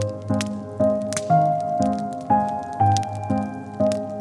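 Slow, gentle piano music, a note or chord struck about twice a second and left to ring, with the crackle and pops of a wood fire underneath.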